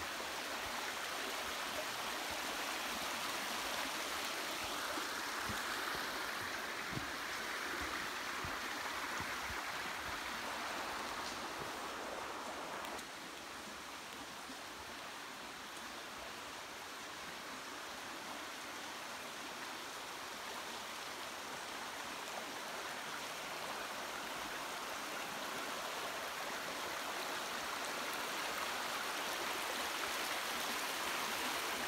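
Rocky creek running steadily over stones and small riffles. It drops a little in level about halfway through, then builds again toward the end.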